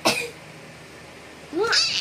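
A baby's high-pitched squeal of delight about one and a half seconds in, rising and falling in pitch. It follows a short sharp sound at the very start.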